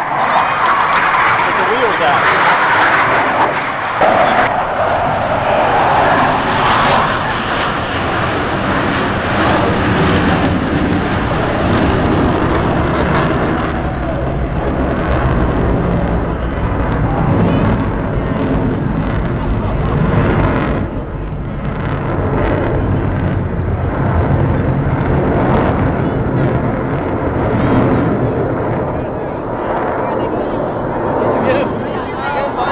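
Jet engine noise from Blue Angels F/A-18 Hornets flying overhead. It is a loud, continuous rush, brightest for the first dozen seconds, then settling into a deeper rumble.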